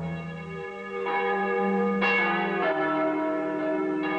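Church bells ringing: several bells of different pitches struck one after another, each one ringing on under the next.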